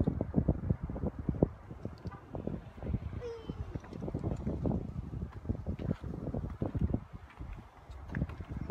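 Wind buffeting a phone microphone outdoors: irregular low rumbling gusts that come and go.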